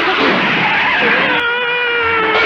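Cartoon race-car sound effects: a loud, rushing engine noise, joined about halfway through by a long, held high tone that sinks slowly in pitch.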